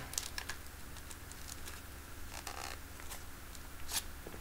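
Faint small plastic clicks and rustles of a hypodermic syringe being handled while its needle is swapped for a new one, with a sharper click near the end.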